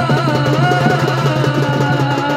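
Live Odia Danda Nacha folk music: barrel drums beaten in a fast, even rhythm under a wavering melody line and a steady low drone.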